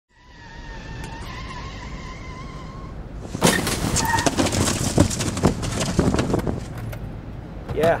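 A vehicle's steady hum, then from about three seconds in a dense run of knocks and crashes as a Jeep Wrangler JK drives into a stack of cardboard boxes and sends them tumbling.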